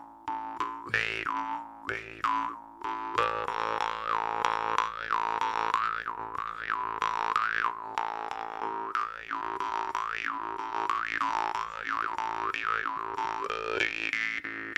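Jaw harp played in a slow groove: a steady buzzing drone under rhythmic plucks, with the mouth-shaped overtone rising and falling about once a second.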